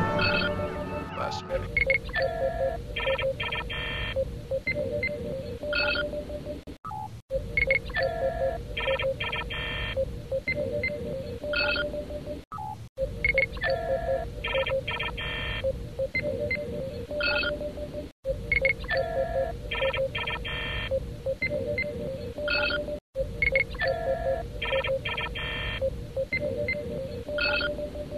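Looped sci-fi computer sound effect: short electronic beeps and chirps at several pitches over a steady pulsing tone, the same sequence repeating about every five and a half seconds. Orchestral music fades out in the first second or so.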